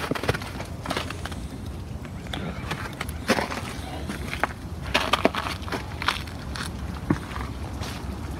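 Irregular footsteps crunching on snowy, wood-chip-strewn ground, with scattered knocks and clicks from handling the phone over a low steady rumble.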